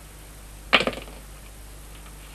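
A wooden stick brought down sharply: one short, sudden, loud sound about three-quarters of a second in.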